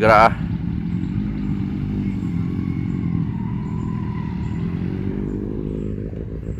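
Motorcycle engine idling steadily, with a brief word spoken over it at the start.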